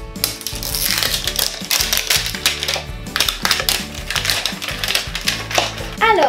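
Paper wrapper being torn and stripped off a plastic toy capsule: a dense run of crackles and rips. Background music plays underneath.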